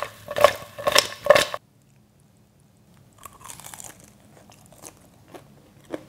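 Glazed fried chicken pieces being tossed and stirred in a pan, about four loud scraping strokes, cut off suddenly about one and a half seconds in. After a pause, fainter crunching and a few small clicks as a crisp piece of fried chicken is bitten and pulled apart.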